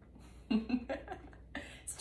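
A brief vocal sound in a woman's voice about half a second in, with low room tone around it.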